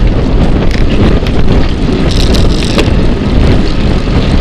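Wind buffeting the microphone of a bike-mounted action camera at riding speed, a loud steady rumble with road noise and a few short clicks and rattles.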